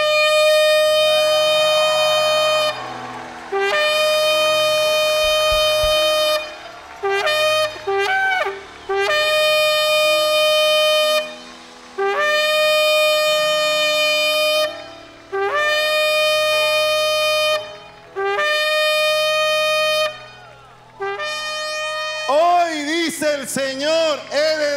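A long twisted shofar blown in a series of long blasts, each held on one steady note with a short upward scoop at the start. About a third of the way through there is a quick run of short notes. This is the jubilee call of the ram's horn.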